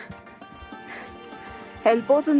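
Soft background music with steady held tones. Just before the end a loud, pitched vocal sound starts, gliding downward.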